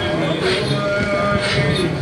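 A voice chanting a noha in long, drawn-out notes over a soft beat about once a second.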